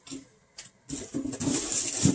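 A mailed package being handled and opened: a brief faint rustle at the start, then a louder rustling of packaging for about a second, from about a second in.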